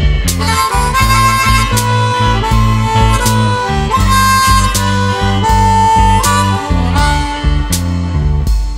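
Blues instrumental break: a harmonica solo of long held, bending notes over a band backing of electric guitar, bass and drums.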